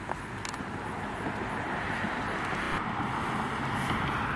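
Steady road traffic noise from a nearby street, growing somewhat louder near the end, with a brief click about half a second in.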